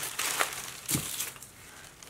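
Tissue paper wrapping crinkling and rustling as hands pull it open, with a few sharper crackles in the first second before it settles down.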